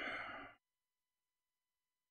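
A short exhaled breath into the microphone, about half a second long, right at the start.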